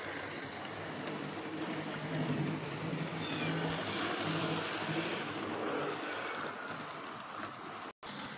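Model train running past on the layout's track, its motor whirring and wheels rumbling on the rails; it grows a little louder in the middle and eases off towards the end.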